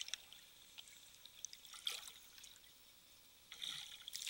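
Faint water sounds, with light trickling and a few small scattered ticks and drips.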